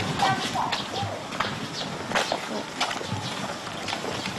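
Footsteps of two people walking along a street: an uneven run of sharp taps over street background noise.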